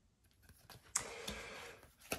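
Tarot cards being handled: a few faint ticks, one sharp click about a second in, then a short soft rustle of card sliding against card.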